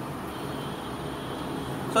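Steady background noise with no speech, an even hiss and hum of the room or of the surroundings.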